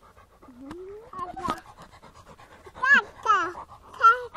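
A dog panting quickly and steadily, with two short, loud voice calls about three seconds in.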